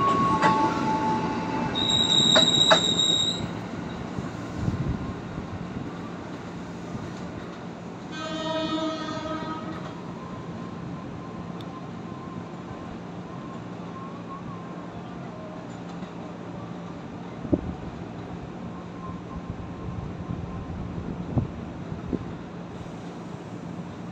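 Electric commuter train pulling out of a station and running past, its wheels squealing high about two to three seconds in, then fading away as it leaves. About eight seconds in a train horn sounds once for about two seconds. A low steady hum remains, with a couple of faint knocks.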